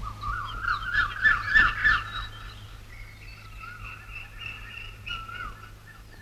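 Birds calling: a quick run of repeated short chirps in the first two seconds, then fainter, with a few long held whistling notes.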